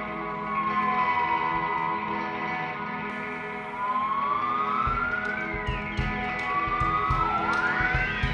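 A live band's ambient intro: a sustained electric guitar drone with tones sliding slowly up and down in pitch. From about five seconds in, irregular low thumps and light ticks join in.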